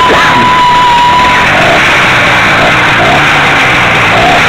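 Small two-stroke engine of a motorized bicycle running at riding speed, loud, mixed with heavy wind rush on the microphone. A steady thin whistle-like tone stops about a second and a half in.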